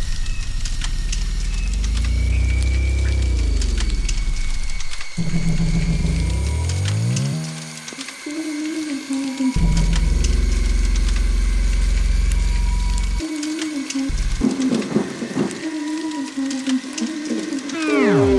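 Eerie horror-style soundscape: deep low drones under pitched tones that swoop up and back down, then glide upward, with a wavering tone and a long steady high tone above. It dips briefly about eight seconds in, and a heavy drone returns about a second and a half later.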